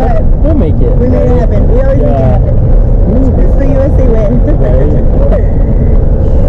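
Excited voices of passengers inside a moving car, with gliding, drawn-out pitches, over the car's steady low rumble.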